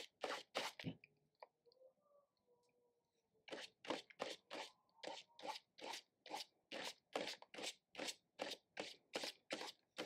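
A bristle brush stroking gloss gel medium across a paper journal page, short faint scratchy strokes at about three a second. The strokes pause for about two and a half seconds while the brush is reloaded from the jar, then start again.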